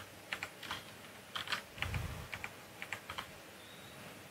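Computer keyboard keys and mouse buttons clicking: a dozen or so quiet, light clicks at an irregular pace, including the Delete key pressed several times in a row.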